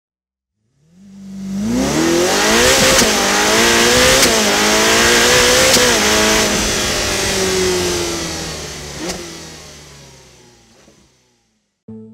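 A car engine revving hard and accelerating, its pitch climbing, dipping briefly and climbing again a few times, with sharp ticks at those points; it then falls in pitch and fades away near the end.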